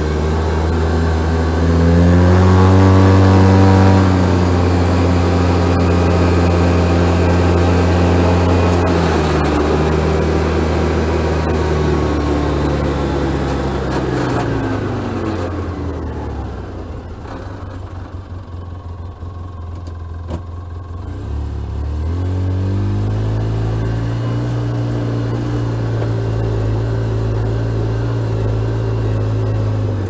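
Polaris RZR S side-by-side engine driving on a road, picked up by a microphone on the hood. It pulls harder with a rising pitch a couple of seconds in, runs steadily, drops away to a low idle about halfway through, then speeds up again about three-quarters of the way through and holds steady.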